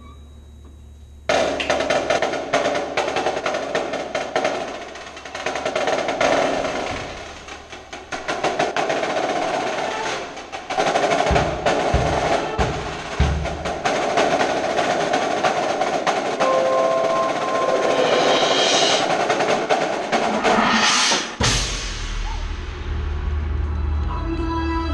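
Percussion ensemble with marimbas and drums playing loudly in rapid, dense strokes, starting suddenly about a second in. A few deep booming hits come around halfway, and near the end a swell rises and then cuts off.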